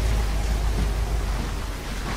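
Heavy rain falling: a steady, even hiss with a low rumble underneath.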